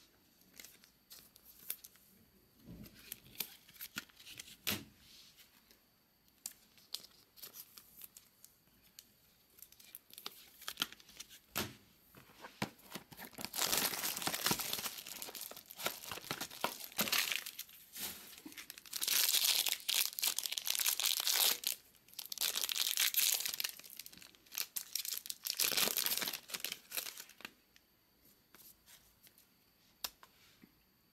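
Soft clicks and shuffling of trading cards being handled. About halfway through come four long loud stretches of crinkly wrapping being torn and crumpled as a sealed Bowman Inception card box is opened.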